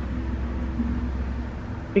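A steady low mechanical rumble, like a running engine or motor, that drops away near the end.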